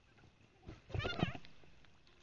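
A small child's brief, high-pitched wavering vocal sound, like a squeal or whimper, about a second in, over faint background noise.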